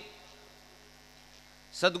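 Faint steady electrical hum from a microphone and sound system in a pause between spoken phrases. A man's voice comes back in near the end.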